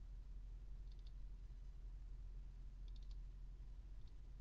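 Faint computer mouse clicks in two quick clusters, about a second in and again about three seconds in, over a low steady hum.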